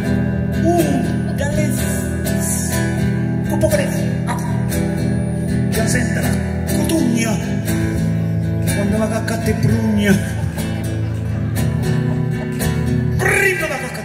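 Acoustic guitar playing a steady accompaniment, with a man's voice coming in over it at moments, most strongly near the end.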